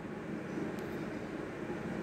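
Steady low background hum and hiss, with no distinct event.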